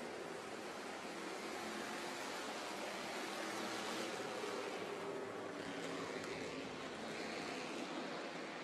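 Bandolero race cars running around the track, heard from a distance: a steady wash of noise with a faint engine drone underneath.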